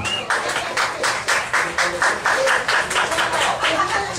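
Small audience applauding, the separate claps coming about four a second.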